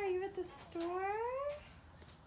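A toddler's wordless vocalizing: a short call, then a longer call that rises steadily in pitch.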